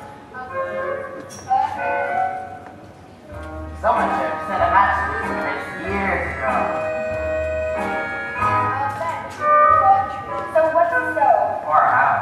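Young stage cast singing a song in turns, with keyboard accompaniment underneath, in a large hall.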